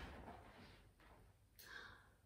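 Faint paper rustle of a large picture book's page being turned over, with a soft swish at the start and another near the end.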